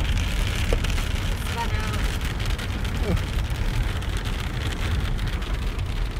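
Steady rain and wet-road tyre noise with the low, even rumble of a moving car, heard from inside the car.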